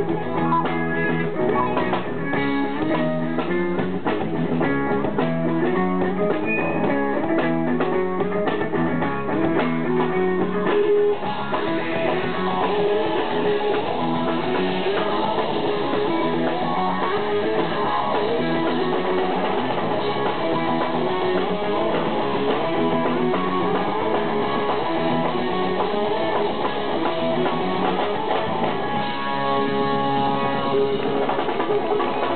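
A live rock band plays electric guitars, bass and drums in a steady rhythmic groove. About eleven seconds in, the sound thickens, with a brighter wash over the riff.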